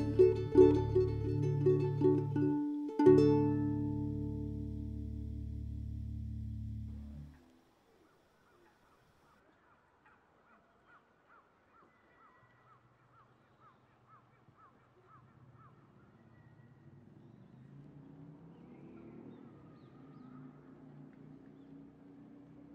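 Soprano ukulele and bass guitar playing the closing bars, ending on a final chord about three seconds in that rings out for about four seconds before stopping. After that only faint background sound remains, with a run of faint repeated calls.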